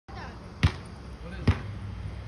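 Two sharp thuds about a second apart, evenly spaced like a ball being bounced, over faint voices.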